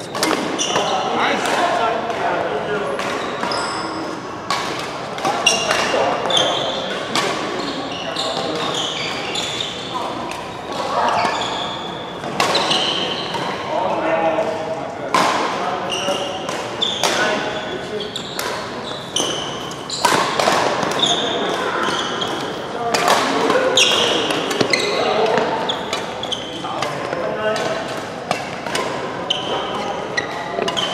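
Badminton doubles play in a large hall: many sharp racket strikes on the shuttlecock at irregular intervals, with short high squeaks and voices echoing in the hall.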